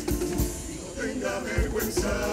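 A comparsa's live band playing: Spanish guitars over a drum beat. The music drops back briefly in the middle and picks up again about a second in.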